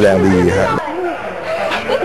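Speech only: a man speaking Thai, breaking off abruptly just under a second in, followed by quieter voices.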